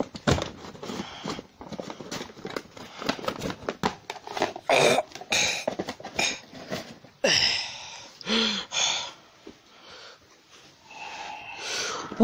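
Rustling, brushing and light knocks from plush toys and a paper prop being handled against carpet close to a phone microphone. A few breathy huffs come through about halfway in.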